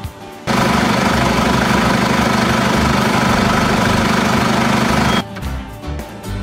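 John Deere tractor's diesel engine running steadily and loudly. It starts suddenly about half a second in and cuts off suddenly about a second before the end.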